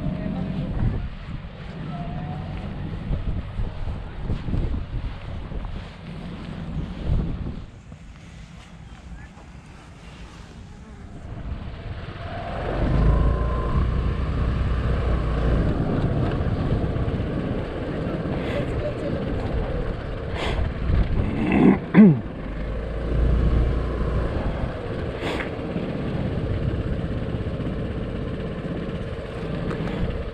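Wind buffeting the microphone for the first several seconds. After a quieter spell, a 250cc motor scooter's engine runs steadily from about twelve seconds in as the scooter rides slowly through a car park, with a brief rise in pitch about two-thirds of the way through.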